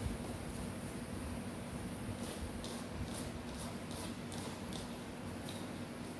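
A hand mixing dry flour, baking powder and salt in a bowl: soft, short rustling strokes, about two or three a second, beginning about two seconds in, over a steady low hum.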